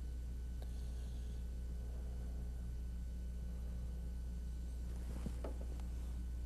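Steady low electrical hum under faint room tone, with a single faint click near the end.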